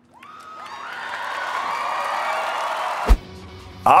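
Music swell: layered tones rise and build in loudness for about three seconds, then cut off with a short low hit.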